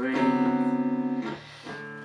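Live song: a young male voice holds a sung note over guitar accompaniment, then stops a little over a second in, leaving the guitar playing more quietly on its own.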